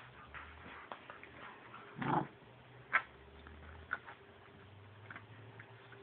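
Red-nose pit bull puppies play-fighting over a toy: a short bark about two seconds in, then two sharp yips about a second apart, with light scuffling between.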